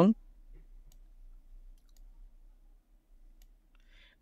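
A few faint computer mouse clicks, spread out, against quiet room tone.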